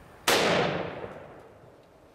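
A single .338 Lapua Magnum rifle shot from an Armalite AR30A1, about a quarter second in. Its report trails off over about a second and a half.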